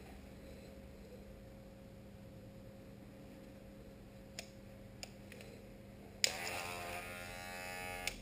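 Cordless Wahl hair clipper handled with a few small clicks, then its motor switches on with a click about six seconds in and runs with a buzz until the end.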